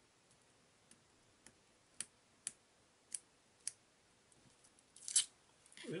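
A pokey tool picking at the backing of a double-sided tape strip makes a run of small, sharp clicks about every half second. About five seconds in there is a brief, louder scratchy rasp as the backing strip is peeled away too quickly.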